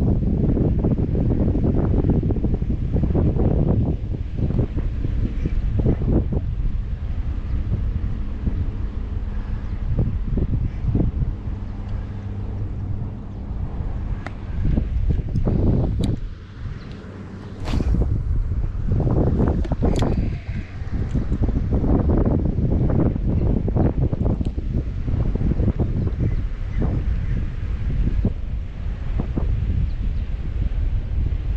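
Wind buffeting the camera microphone in strong, uneven gusts, with a short lull about halfway through and a few light clicks around it.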